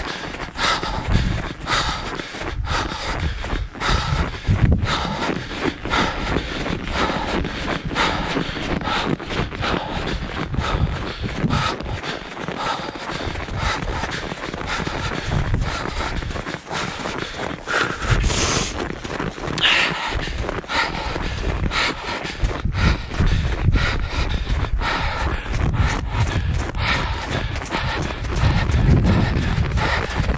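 Rhythmic footsteps crunching on packed, groomed snow as two runners climb a steep ski slope, with their hard breathing from the climb.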